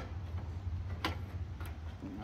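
A toggle switch being flicked: one sharp click about a second in and a fainter click later, over a low steady hum.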